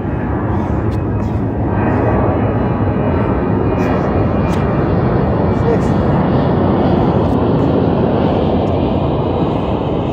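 A loud, steady rumbling noise that swells about two seconds in and eases near the end, with a few faint clicks over it.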